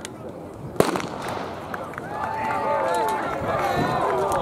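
A single sharp bang about a second in, followed by people's voices calling out.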